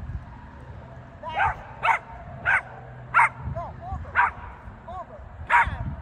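Small dog barking sharply while running an agility course, six loud barks at uneven intervals from about a second in, with fainter short calls between them.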